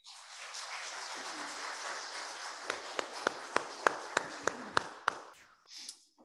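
Congregation applauding. One pair of hands clapping close to the microphone stands out with about nine sharp, evenly spaced claps in the second half. The applause fades out near the end.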